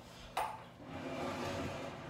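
A sharp clack with a brief ring about half a second in, then a second or so of rustling and shuffling as things are handled at a TV stand.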